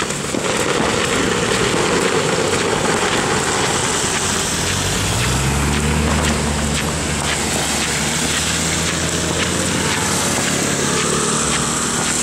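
Steady rain and wind noise with scattered ticks of raindrops. About five seconds in, the low, steady hum of a car engine running close by joins it and fades near the end.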